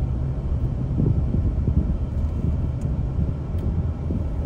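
Steady low road rumble of a car driving through a road tunnel, heard from inside the cabin.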